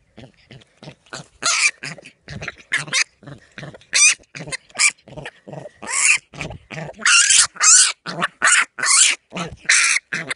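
A young wild pig squealing and grunting in a rapid string of short, harsh cries while held down by hand, the cries growing longer and louder in the second half.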